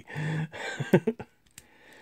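A man's wordless voice sounds, a short hum and then a brief rising vocal sound, in the first second. Then near quiet, with one small click about three-quarters of the way through as the plastic toy is handled.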